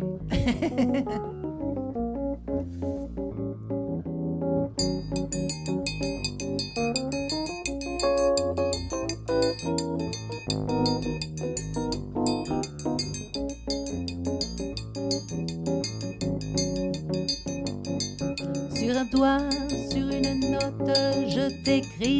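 Electric stage piano playing a jazzy chordal intro, after a woman's brief laugh at the start. Her singing voice comes in near the end.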